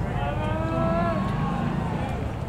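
A person's long, drawn-out shout or call, held for about a second and sagging slightly in pitch at the end, over steady open-air background noise.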